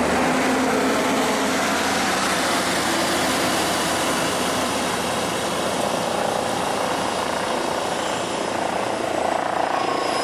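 Street traffic close by: a city bus pulling in alongside and a van driving past, giving a steady, even rushing noise with no distinct events.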